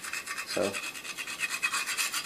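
A small metal scraper rasping old pine tar off a wooden baseball bat in quick, light, repeated strokes.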